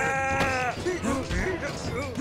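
A cartoon character's long strained cry held on one pitch, breaking off under a second in, followed by short grunts of effort.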